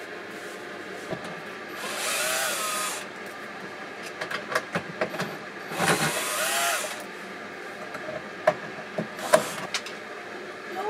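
Cordless drill-driver run twice for about a second each, its motor whine rising as it spins up, driving screws into a wooden drawer to fit a sideways drawer lock. Sharp clicks and taps of handling the tool and hardware come between the two runs and near the end.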